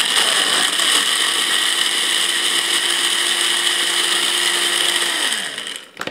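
Countertop blender motor running steadily at full speed, churning banana, tomato juice and dog food into a purée, then switched off about five seconds in and spinning down.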